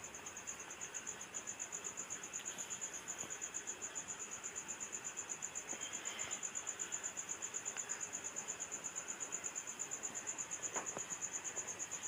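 Crickets chirping in a fast, even, high-pitched pulse, the loudest sound. Beneath it, the faint sizzle of pakoras deep-frying in oil in an iron kadhai, with a couple of light clicks of the metal spatula.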